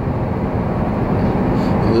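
Steady rumble of a car on the move, tyre and engine noise heard from inside the cabin.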